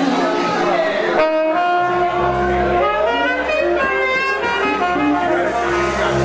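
Live blues band playing, a saxophone carrying the melody over electric guitar; a steady low bass note comes in about two seconds in.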